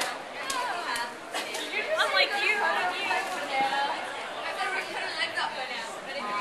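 Several people's voices chattering at once in a large echoing hall, with a few faint clicks among them.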